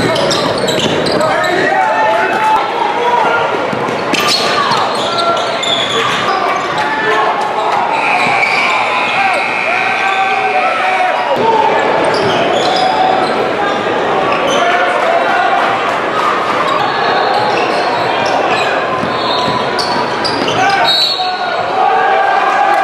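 Live game sound in a large, echoing gym: a basketball dribbled on a hardwood court, with players and spectators shouting and chattering throughout.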